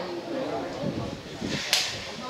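Spectators talking near the microphone, with one sharp crack near the end.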